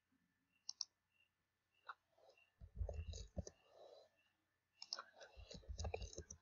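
Faint computer mouse clicks and keyboard key taps: a pair of clicks about a second in, then two short runs of taps with soft thuds, as a short word is typed.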